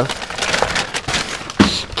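Plastic shopping bag being handled, crinkling and crackling with many small irregular clicks.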